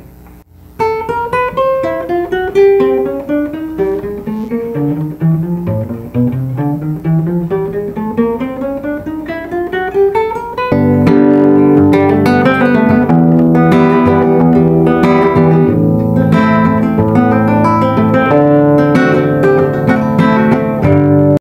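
Acoustic guitar playing a fingering exercise: single picked notes stepping up the neck in repeated patterns. About halfway through it gives way suddenly to louder, fuller strummed guitar music with held chords.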